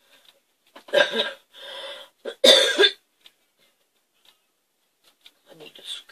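A woman laughing in three short bursts over about two seconds, the last and loudest breaking into a cough-like sound.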